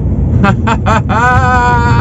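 A man's voice: a few short sounds, then a long drawn-out vowel held at one pitch from about a second in, running into laughter, over the steady low rumble of a moving truck cab.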